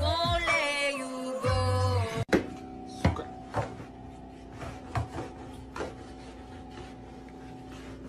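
For the first two seconds, singing over music with a bass line, which cuts off suddenly. Then a long stick pokes and scrapes in the gap under a refrigerator, making scattered short knocks and rubbing sounds over a steady hum.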